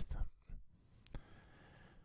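Computer mouse clicking: a few short single clicks, the clearest a little over a second in.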